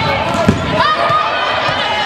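A volleyball being hit once, a sharp smack about half a second in, followed by players' voices calling out, all echoing in a busy gym.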